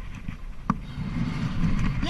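Wind buffeting the microphone of a camera held by a bungee jumper in free fall: a low rumble, with one sharp click a little before a second in.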